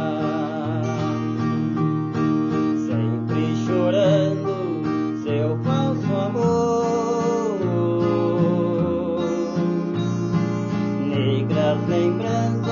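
Nylon-string acoustic guitar played fingerstyle: a slow sertanejo raiz melody over steady, repeating bass notes.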